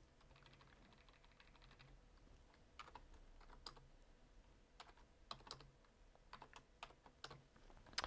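Faint computer keyboard typing: quick key clicks in a short run, then scattered single clicks and brief runs with pauses between them.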